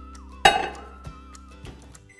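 A microwave oven door shut once with a loud clunk about half a second in, over background music.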